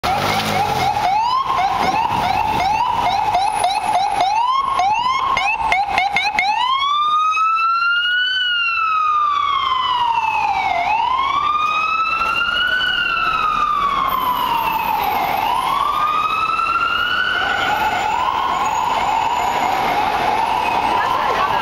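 FDNY ambulance siren passing close by. It runs a fast yelp of about two quick rising sweeps a second, switches about six seconds in to a slow wail rising and falling every four to five seconds, and goes back to the fast yelp near the end.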